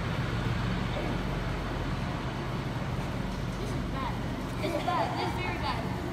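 Steady low hum of a large hall's room noise, with faint distant voices coming in about four and a half seconds in.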